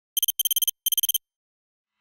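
Electronic beeping sound effect: three quick bursts of rapid high-pitched beeps within the first second or so, like an alarm clock's pattern, then silence.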